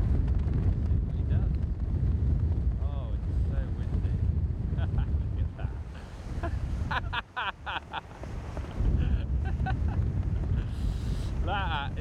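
Wind buffeting the microphone: a loud, steady low rumble that drops away briefly about seven seconds in, then returns.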